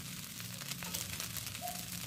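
Village-style fried rice sizzling softly in a hot wok, with fine, steady crackling and no stirring.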